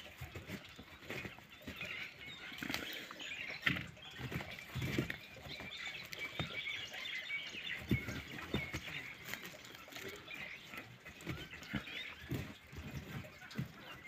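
Hands rummaging through chopped maize silage in an opened plastic silage bag: irregular rustling and crackling of the dry stalks and leaves and the bag's plastic.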